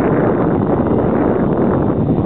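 Wind buffeting the camera microphone: a loud, steady rushing noise that drowns out everything else.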